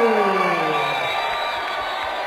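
Crowd cheering the announcement of the fight's winner, under the ring announcer's long, drawn-out call of the winner's name, which falls in pitch and fades out about a second in.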